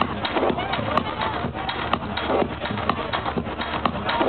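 People in the crowd talking close by over electronic dance music from a DJ set.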